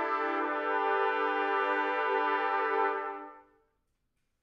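A large trumpet ensemble holding a sustained chord of several notes, which is released a little after three seconds in and dies away within half a second.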